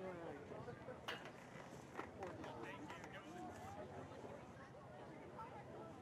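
Faint, distant voices of players and spectators at an outdoor soccer game, with two short sharp knocks about one and two seconds in.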